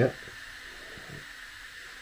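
Quiet, steady background hiss with no distinct event, just after a short spoken 'yeah'.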